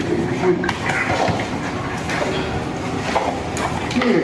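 People talking in a room, with a few light clicks scattered through.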